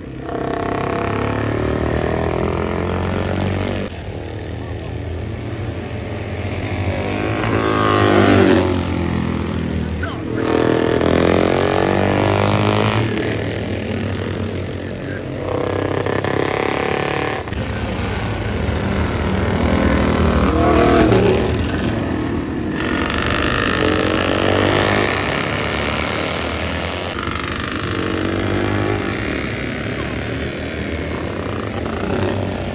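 Classic racing motorcycles passing one after another at speed on a soaked track, each engine note rising and then falling in pitch as it goes by. Abrupt cuts separate the passes.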